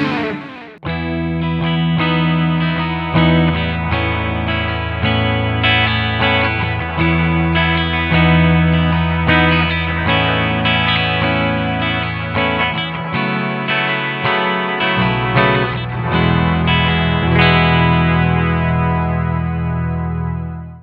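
Harley Benton R-457 seven-string electric guitar on its bridge pickup, played clean through a Kemper Profiler: sustained, ringing chords and arpeggios over a backing track. A distorted passage breaks off at the very start, and the clean playing comes in about a second later.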